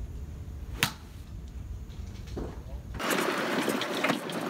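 A golf club striking a ball off a driving-range mat: one sharp click a little under a second in, over a low rumble. About three seconds in, this gives way abruptly to louder, steady noise from a moving golf cart.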